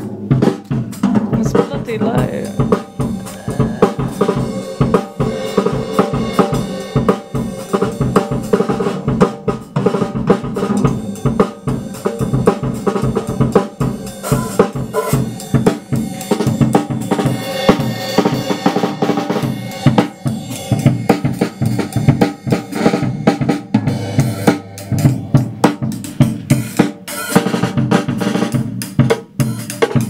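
Acoustic drum kit played without a break: a busy, continuous run of drum and cymbal strikes.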